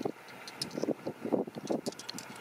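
Shallow water lapping and sloshing at the water's edge in short, irregular splashes.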